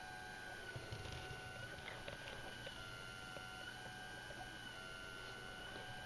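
Faint, thin, high electronic whine that steps up and down in pitch a few times, over a low steady hum.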